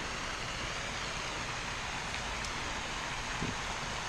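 Steady, even rush of flowing water with no distinct events.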